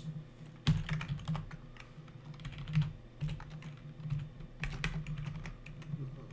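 Typing on a computer keyboard: irregular key clicks as code is entered.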